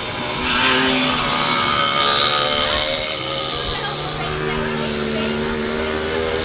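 Small motorcycle engines racing on a grass track. One bike passes close, rising and falling in loudness from about half a second to three seconds in, then the engines run on at a steadier pitch.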